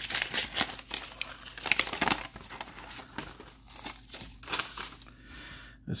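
Paper envelope crinkling and rustling in the hands as a card in a plastic toploader is slid out of it. The sound is a rapid run of irregular crackles, busiest in the first three seconds and sparser afterwards.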